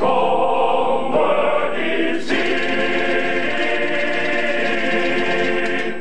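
Male choir singing in full harmony. About two seconds in the chord changes, and the choir then holds one long chord.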